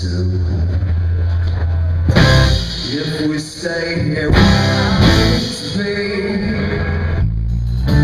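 Live rock band playing with guitars, bass and drums, with loud accented hits about two, four and five seconds in. A male voice sings at times.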